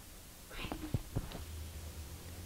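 Faint whispered voices and a couple of small clicks, followed by a low steady hum.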